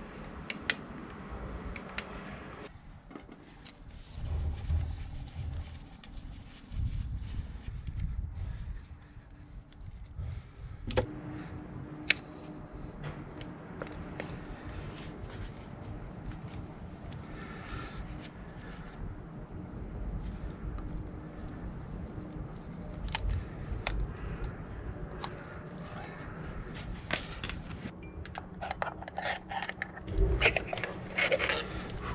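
Small metal parts and hand tools being handled: scattered sharp metallic clicks and clinks, with dull low bumps in between, as the oil filter cover comes off the engine and the filter is pulled out with pliers. The loudest click comes about twelve seconds in.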